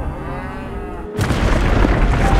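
Cattle lowing, with gliding calls. About a second in, a sudden loud rushing rumble takes over.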